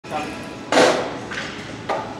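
Short, forceful bursts of breath and voice from a bench-press lifter bracing under a loaded barbell, the loudest about a second in, followed by a short knock near the end.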